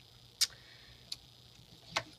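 Small metal word-plate embellishments clicking as they are handled and moved on the desk: three short clicks, the middle one faint.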